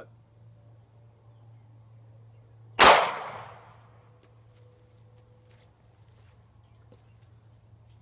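A single shot from a 9mm Luger pistol: one sharp, loud report about three seconds in, its echo dying away over about a second.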